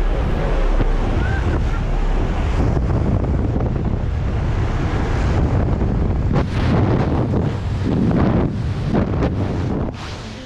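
Loud wind rushing through the open door of a turboprop jump plane, mixed with engine noise and buffeting the camera microphone, with stronger gusts in the second half.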